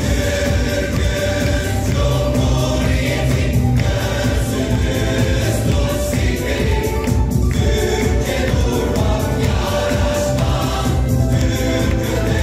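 A group of voices singing together as a choir over an instrumental accompaniment with a steady bass, held notes and no breaks.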